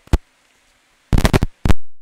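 Sharp, loud clicks: a single one just after the start, then a rapid cluster of clacks a little past the middle and one more shortly after.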